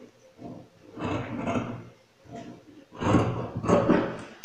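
Fabric scissors cutting through velvet and sequined fabric, with the cloth rustling as it is handled, in several rough bursts; the loudest come about a second in and from about three seconds in.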